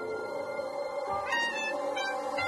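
Background music with steady tones. From about halfway through, a parakeet gives several short, high calls over it.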